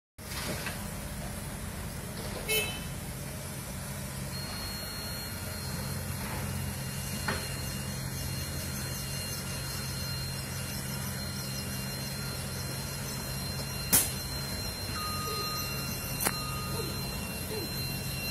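Diesel engines of a CAT 307E mini excavator and a dump truck running with a steady low hum as the excavator loads the truck. A few sharp knocks stand out, the loudest about fourteen seconds in, and a thin steady high whine comes in about four seconds in.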